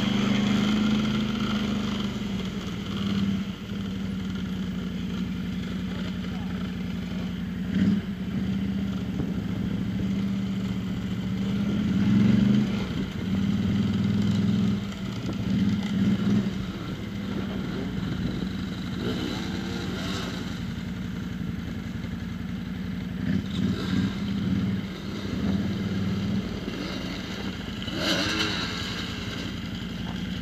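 Off-road vehicle engine idling steadily, revved up in short swells several times.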